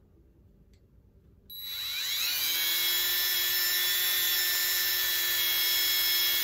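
Cordless drill motor starting up about a second and a half in, its whine rising in pitch as it spins up and then running steadily while the bit bores a hole into a dried tulsi twig.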